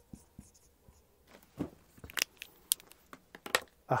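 Dry-erase marker writing on a whiteboard: a series of short, sharp strokes beginning about a second in.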